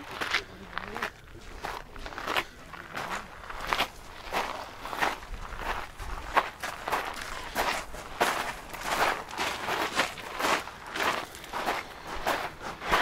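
Footsteps on a gravel path at a steady walking pace, about two steps a second.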